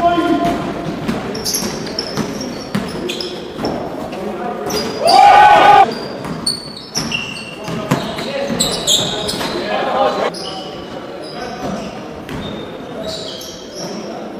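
Basketball being played on a hardwood gym floor: the ball bouncing, sneakers squeaking in short high chirps, and players calling out, with the hall's echo. The loudest moment is a shout about five seconds in.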